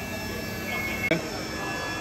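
CNC milling machine cutting a metal tail rotor gearbox housing under coolant spray: a steady machining whine with several held tones, a short higher tone and one sharp click about a second in.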